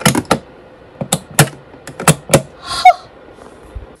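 Push-button lids on clear plastic airtight food storage containers being pressed down, clicking sharply about seven times in quick pairs. A short noisy burst comes a little before the three-second mark.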